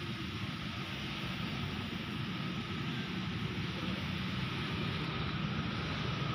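Steady outdoor background noise: an even rumble and hiss with no distinct events.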